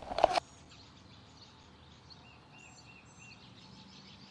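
A brief loud knock or rustle at the very start, then quiet woodland air with faint songbirds calling. About halfway through, one bird gives four short whistled notes in quick succession, with a few higher chirps around them.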